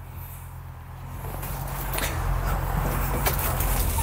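Everun ER408 loader's 25 hp three-cylinder diesel engine idling steadily, with a few knocks and rustles as someone climbs up into the cab; the overall sound grows louder from about a second in.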